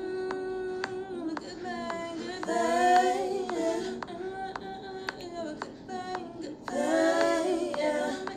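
A female vocal hook played back with stacked backing vocals, the layered voices held in long sung notes, over a sparse beat of sharp clicks about twice a second.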